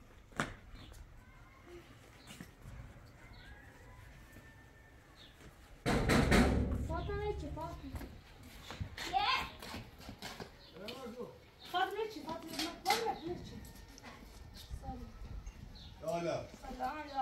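A loud, low noise about six seconds in, lasting about a second, then voices speaking in short phrases, among them a child's.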